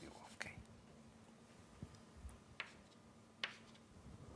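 Chalk on a blackboard: a few short, sharp strokes and taps as an equation is written, over near-silent room tone with a faint steady hum.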